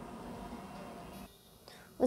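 A pause between spoken words holding only faint room hiss, which drops to near silence about a second and a quarter in.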